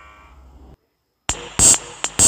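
General MIDI playback of Microsoft Office clip-art MIDI files. A held synthesized keyboard chord dies away and stops short. After half a second of silence, the next tune opens with loud, sharp electronic drum hits.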